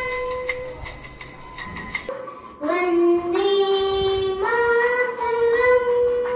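A young girl singing solo, holding long, steady notes; a quieter stretch is followed by a louder, higher phrase starting about two and a half seconds in.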